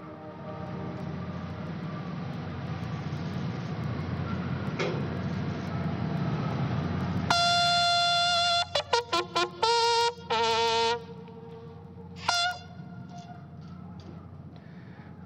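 A steady low rush that grows louder for about seven seconds, then the bugles of a military band sound a call of several held notes that step between pitches, with one more short note near the end.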